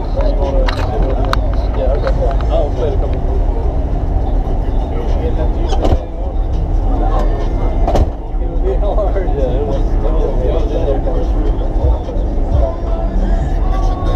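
Several people talking over a steady deep rumble, with two sharp clicks about six and eight seconds in.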